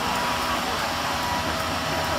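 The engine of a motorized backpack mist sprayer running steadily, a constant drone that holds one pitch.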